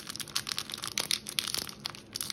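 A Topps Big League baseball card pack's foil wrapper crinkling and tearing in short, irregular crackles as fingers work at a stubborn seam to open it.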